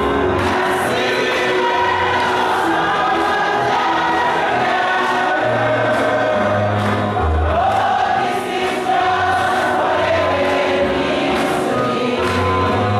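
Church congregation singing a gospel song together, with musical accompaniment and a steady beat.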